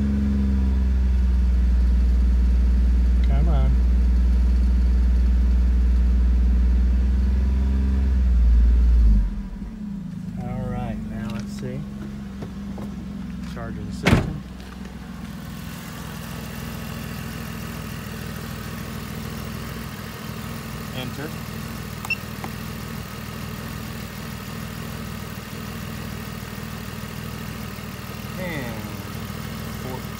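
Pontiac G6 engine held at a steady raised speed of about 2,500 rpm for a charging-system test, with a rattle from underneath that may just come from the way the car is parked. About nine seconds in, the revs drop back to idle. A single loud thump comes a few seconds later, and the engine then idles steadily.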